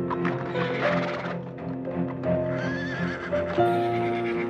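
A horse whinnies and its hooves clop, over background music of long held notes.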